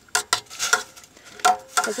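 A metal spoon stirring potato chunks in water in a stainless steel pot, clinking and knocking against the pot's sides several times.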